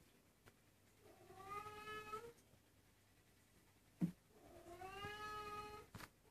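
A cat meowing: two long, drawn-out meows that rise slightly in pitch, about three seconds apart.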